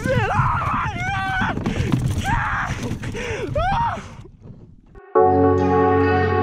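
A man's excited untranscribed shouts over a rumbling noise. About five seconds in, calm ambient synthesizer and electric-piano music starts suddenly.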